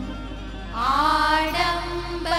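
Women singing a Gujarati garba folk song live over instrumental accompaniment. A quieter held note gives way, about three-quarters of a second in, to a louder sung phrase that rises in pitch.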